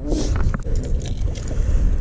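Wind rumbling on the microphone, with a few light clicks and knocks, most of them in the first half-second.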